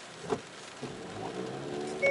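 Hyundai Veloster N's engine running, its hum building gradually from about a second in as the car tries to pull out of the mud with traction control still on. Rain patters steadily on the car.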